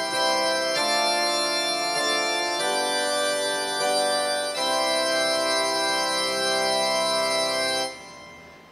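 Pipe organ playing held chords that change several times, then stops abruptly shortly before the end.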